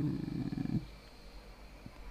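A man's drawn-out hesitation 'eh' trailing off in a low, creaky voice for under a second, followed by quiet room tone.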